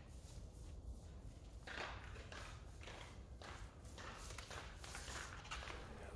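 Faint, soft swishing strokes, a few seconds apart, of a long-handled paint roller pushed through thick wet epoxy on a concrete garage floor, over a low steady hum.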